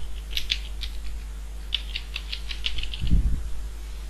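Computer keyboard keys clicking as text is typed: a short run of about five keystrokes, a pause, then a quicker run of about a dozen. A louder low thud comes about three seconds in.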